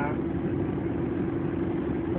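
Car engine running steadily, heard from inside the cabin as a low rumble with a steady hum.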